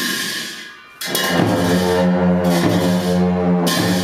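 A cymbal crash rings out and fades, then about a second in a pair of dungchen (Tibetan long horns) start a loud, low, steady drone that holds. Cymbals clash again over the drone, most strongly near the end.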